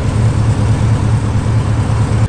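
Lifted Chevrolet Silverado pickup idling, a steady low exhaust rumble.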